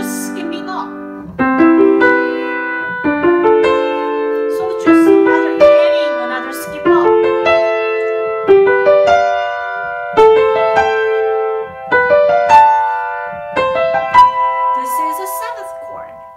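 Piano seventh chords played one after another, each struck and held about a second, stepping up the keyboard chord by chord from C7 to C7.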